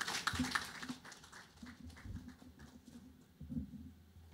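Irregular light taps and knocks that thin out after about a second and a half, over a faint steady low hum.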